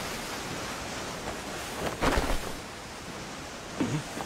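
Steady sea ambience, a wash of water and waves. There is a short louder noise about two seconds in, and a brief low sound falling in pitch near the end.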